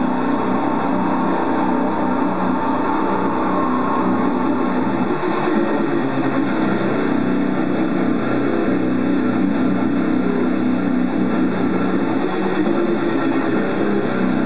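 Distorted electric guitar played continuously in a heavy metal riff, from a Slammer by Hamer XP1 Explorer-style guitar.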